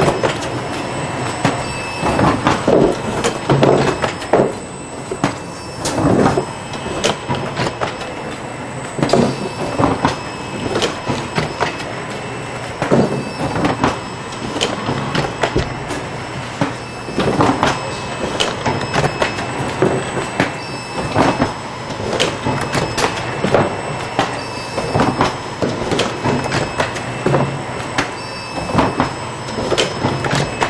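An SWF TF600VK automatic tray former running, set to erect and hot-melt glue cardboard trays at fifteen a minute. Its forming cycle gives repeated clanks and knocks over a steady machine hum.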